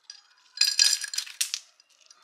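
Ice cubes dropped by hand into an empty glass tumbler, clinking and rattling against the glass in a quick cluster that starts about half a second in and lasts about a second.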